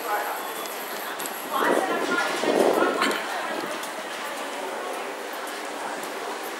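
Busy street ambience with the voices of passersby. A louder voice or burst of voices stands out from about one and a half to three seconds in.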